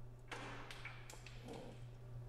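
Faint rustling and a few light taps as the bundled turret harness wires are handled against the white sheet-metal electrical cabinet top box, over a steady low hum.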